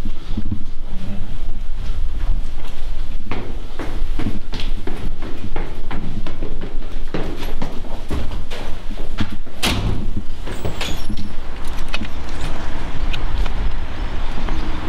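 Footsteps and knocks of someone walking down a stairwell and out through a glass entrance door, over a constant low rumble. The loudest clack, about ten seconds in, is the entrance door.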